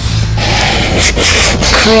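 Aerosol insecticide can spraying: one steady hiss lasting a little over a second, starting about half a second in.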